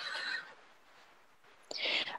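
A short pause between speakers. A faint breathy sound fades out in the first half-second, and a brief breath intake comes near the end, just before the next person speaks.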